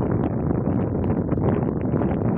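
Wind blowing on the microphone: a steady low noise with no let-up.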